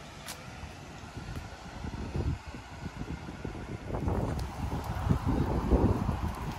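Wind buffeting the microphone in uneven gusts, growing stronger from about a third of the way in.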